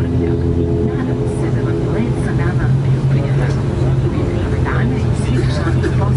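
ATR 72-600's Pratt & Whitney PW127 turboprop and propeller running, heard from inside the cabin beside the propeller as a loud steady drone; the drone's pitch shifts about a second in, a change in engine power.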